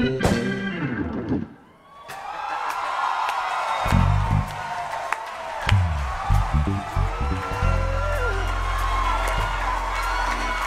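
Live soul-jazz band music. Hammond organ chords fall away in a downward slide and the sound drops out briefly about a second and a half in. The band then comes back with held organ tones and deep electric bass notes from about four seconds in.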